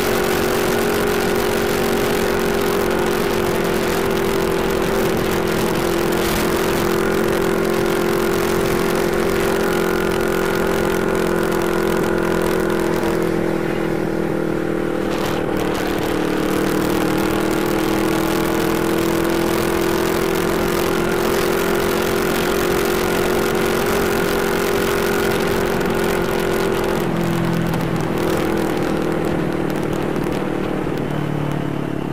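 CFMoto 400NK motorcycle's parallel-twin engine running at a steady cruising speed, with wind rushing past the helmet-mounted microphone. The engine note sags slightly mid-way and drops in pitch near the end.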